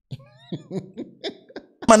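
A man's short, quiet vocal bursts, about six clipped sounds in a row, each falling in pitch, like a stifled cough or chuckle.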